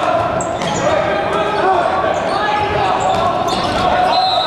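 Men's volleyball match in an echoing gym: several players' voices calling over one another, with a few sharp hits of the ball.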